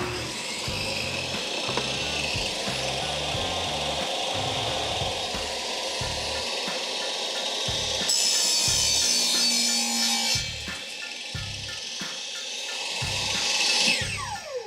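Maksiwa SC650i 1500 W bench saw running, its stock rough-cut blade cutting through a wooden board, with the cut sounding brighter and higher from about eight seconds in to about ten and a half. Background music plays underneath.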